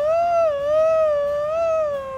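A man's long, high-pitched falsetto shriek of disgust, one held note wavering slightly in pitch.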